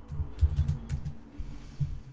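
Typing on a keyboard: a quick run of dull keystroke taps, several a second, with faint clicks.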